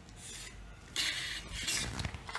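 Pencil and a clear plastic rolling ruler scraping on drawing paper as lines are ruled: a faint stroke, then two louder scratchy strokes from about a second in.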